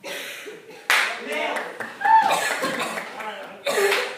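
Clapping close to the microphone, mixed with voices shouting and laughing, coming in several abrupt loud bursts.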